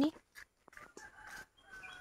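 Faint bird calls: a short pitched call about a second in and another near the end.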